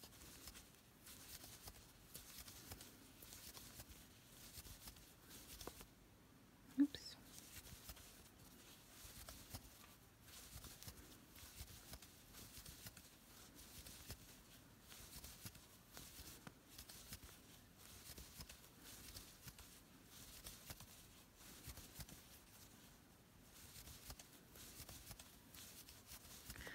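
Near silence with faint, irregular rustling of yarn and a crochet hook as single crochet stitches are worked around.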